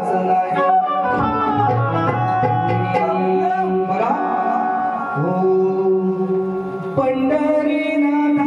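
Male folk singer singing a traditional Konkani Shakti-Tura (jakhadi) song through a microphone and PA, holding long notes, with instrumental accompaniment.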